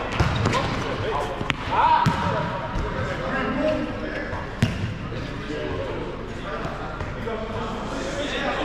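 Futsal ball being kicked and bouncing on a sports hall floor: a handful of sharp thuds, the loudest about four and a half seconds in, with players shouting to one another.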